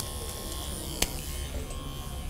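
Purple Oster A6 grooming clipper running with a steady low buzz, with one sharp click about a second in.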